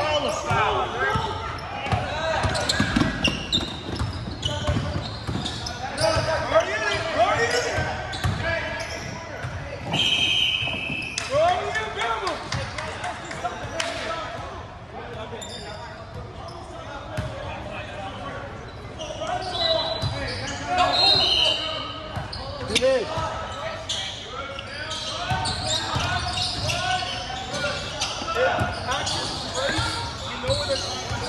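Basketball game in a large gymnasium: a basketball bouncing on the hardwood floor and indistinct voices of players and spectators carrying through the hall, with a short shrill whistle about ten seconds in and another about twenty seconds in.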